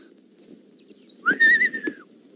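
A person whistling one short note that slides up and then holds, starting a little past halfway.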